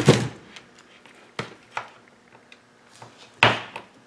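Small clicks and ticks of a flat-bladed screwdriver pushing a gold bullet pin into a plastic EC3 connector housing, then a louder snap about three and a half seconds in as the pin locks into the housing.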